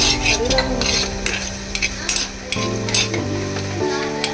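A metal spoon stirring and scraping grated food that sizzles in a frying pan, with a string of short scrapes against the pan.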